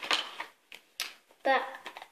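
Small makeup items clicking and knocking together as a hand rummages in a makeup bag, with one sharp click about a second in.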